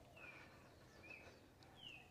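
Near silence with three faint, short bird chirps, each dipping slightly in pitch.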